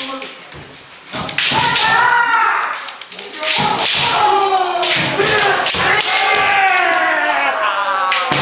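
Kendo practice: bamboo shinai striking armour and each other in sharp taps and knocks, with thumps of stamping feet on the wooden floor. Over them many practitioners shout long overlapping kiai whose pitch falls away, from about a second and a half in.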